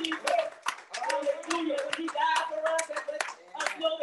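Hand clapping, about three claps a second, over a voice speaking in a small room.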